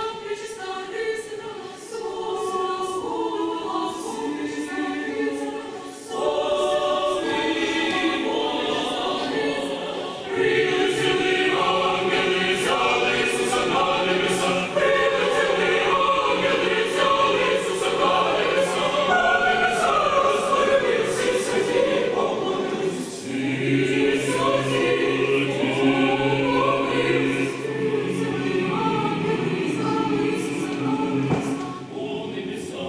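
A mixed choir singing a Christmas carol (koliadka), beginning softly and getting fuller and louder as more voices join, with the low voices coming in strongly about two-thirds of the way through.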